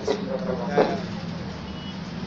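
A steady low engine hum, with short snatches of voice in the first second.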